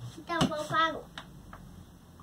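A brief high-pitched wordless vocal sound from a child, rising and falling in pitch for about half a second, with a sharp click at its start and two faint ticks after it.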